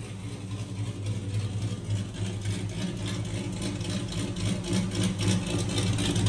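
Supercharged 6.2-litre Hemi V8 of a Dodge Challenger Hellcat idling steadily on a chassis dyno after a pull, a low even hum that grows slightly louder.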